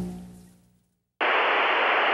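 A pitched tone fades out, then after a brief silence a steady burst of television static hiss sounds for about a second and cuts off abruptly.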